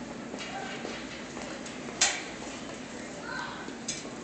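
A single sharp knock about two seconds in, over steady background hum and faint voices.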